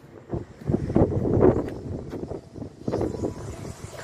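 Wind gusting over the microphone outdoors, an uneven rumbling noise that swells and drops several times.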